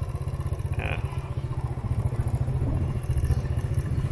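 Low, steady rumble of a motorbike riding along a street at an even pace.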